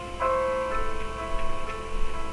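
Solo piano backing track playing slow, ringing chords: a new chord is struck just after the start and another under a second in.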